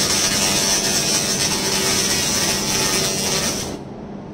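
1000 W continuous fiber laser cleaning head ablating rust off a steel plate: a loud steady hiss with a high whine. It cuts off just before the end as the laser stops firing, leaving the machine's quieter steady hum.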